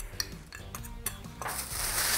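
A metal spoon stirring dry spice powder in a small ceramic bowl, with a few light clinks and ticks. Past the middle a rustling hiss sets in.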